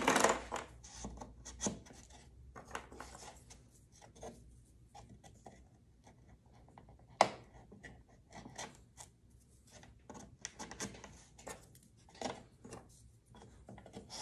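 Wooden spring clothespins, reinforced with rubber bands, being picked from a pile and clipped one by one onto glued kerfed lining along a wooden instrument rim. They make scattered light clicks and wooden clacks, with one sharper clack about seven seconds in.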